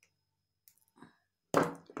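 Small metal jewelry pliers at work on a head pin: a few faint clicks, then a loud clack about one and a half seconds in as the tool is put down on the table, with a second knock just after.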